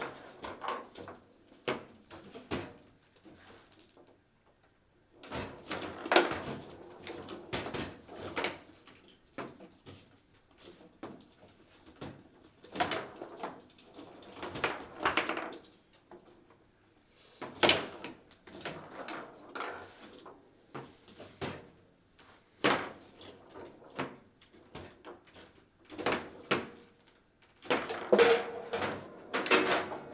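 Foosball play: the hard ball cracks against the figures and the table walls, and the rods clack, in bursts of sharp knocks separated by pauses of a few seconds.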